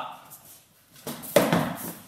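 A stick-sparring exchange with foam-padded sticks: a short burst of noisy scuffling and striking with one sharp hit about a second and a half in.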